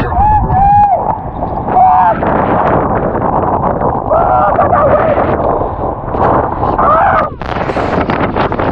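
Strong wind buffeting the microphone while waves crash and splash over the jetty rocks, with gusts and impacts coming and going. Short rising-and-falling vocal calls sound over it a few times.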